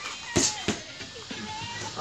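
Two boxing-glove punches smacking into focus mitts in quick succession, about a third of a second apart.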